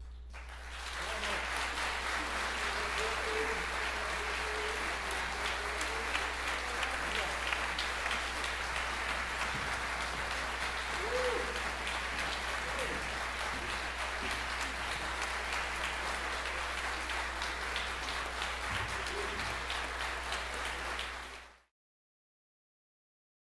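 Audience applauding steadily at the end of a concert band performance, with a few voices calling out above the clapping. The applause cuts off abruptly near the end.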